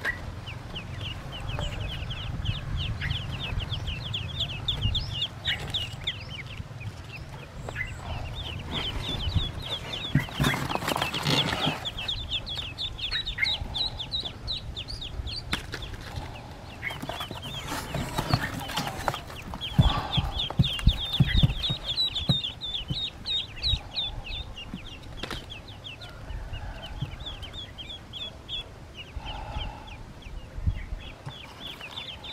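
A brood of newly hatched Pekin ducklings peeping in rapid, continuous runs of high chirps. A few bumps and rustles break in around the middle.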